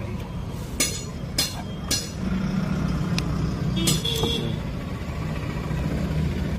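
Low, steady hum of a car engine idling, with a few sharp clicks from wire connectors being handled and pushed together.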